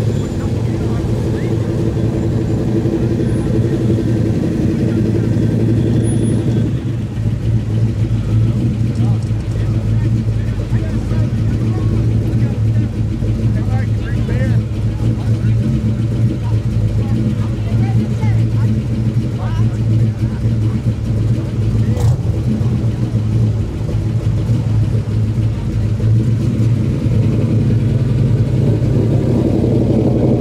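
Classic Chevrolet V8-era cars creeping past at idle, first a mid-1960s Corvette Sting Ray coupe and then an early-1950s Chevrolet sedan delivery: a steady low engine rumble that eases briefly about seven seconds in as one car gives way to the next, with voices in the background.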